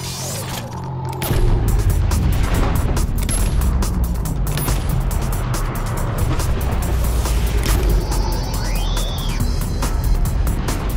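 Dramatic music score with a rapid run of sharp strokes from a tennis-ball launcher firing balls in quick succession, starting about a second in over a heavy low rumble.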